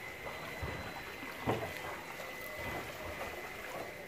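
Swimming-pool water lapping and trickling around people standing in it, with a brief splash about a second and a half in.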